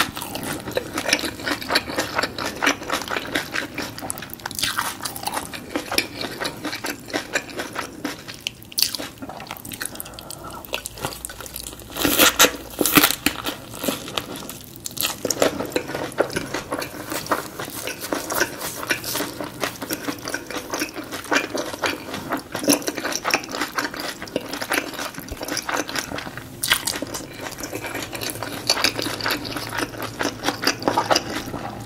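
Close-miked chewing of a fresh rice-paper shrimp spring roll with lettuce and herbs: wet, crunchy mouth sounds with a constant patter of small clicks, and a louder spell of crunching about twelve seconds in.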